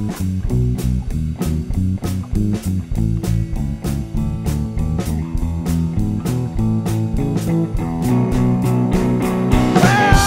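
Blues/rockabilly band playing an instrumental passage led by guitar over a steady beat, with no singing.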